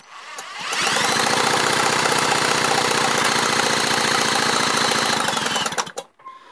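Power drill spinning a British Seagull outboard's flywheel magneto through a socket on the flywheel nut, speeding up over the first second, running steadily, then winding down near the end. This is the drill trick for bringing back the ignition spark.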